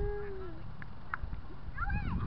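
A person's drawn-out call, one held note that drops in pitch after about half a second, followed near the end by children's voices.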